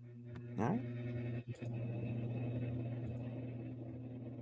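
A steady low hum with a stack of overtones on an open microphone, dropping out for a moment about one and a half seconds in, with a single spoken "Right" near the start.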